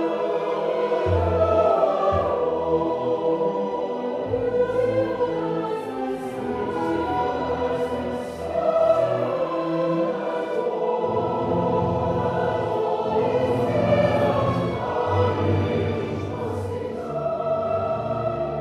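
A choir singing a slow piece with instrumental accompaniment, held low bass notes changing every second or two beneath the voices.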